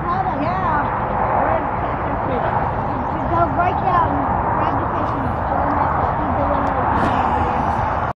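Indistinct voices talking, with no clear words, over a steady rushing background noise.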